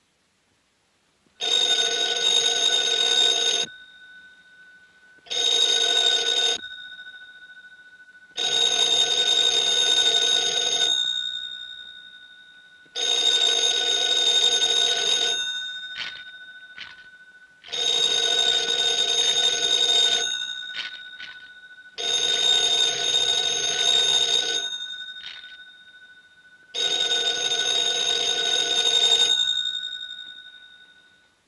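Telephone bell ringing in repeated rings about two seconds long, seven times, each ring dying away before the next.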